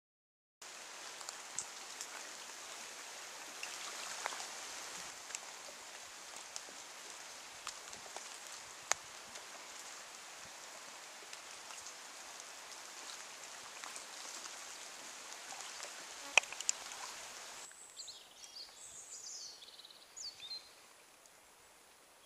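Steady outdoor rain hissing on foliage, with scattered sharp drip ticks. A little before the end the rain sound drops away, and a bird gives a few short, high chirping calls that rise and fall.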